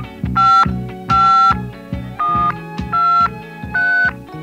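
Hip-hop beat with a deep pulsing bass line, over which touch-tone telephone keypad tones sound five times, each a short two-note beep, in rhythm with the beat.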